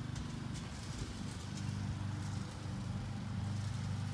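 A steady low hum from some distant motor or machine, with a few faint taps over it.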